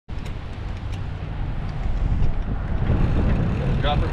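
Wind buffeting a helmet camera's microphone, with tyre rumble from a mountain bike rolling on pavement; the noise cuts in suddenly, with a couple of light clicks within the first second.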